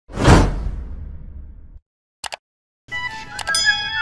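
Edited-in sound effects: a deep whoosh-like hit that fades out over about a second and a half, a quick double click, then music with chiming tones and clicks.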